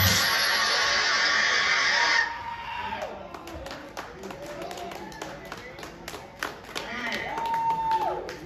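A live band's loud final wash of sound cuts off abruptly about two seconds in, and audience applause and cheering follow, with one long whoop from the crowd near the end.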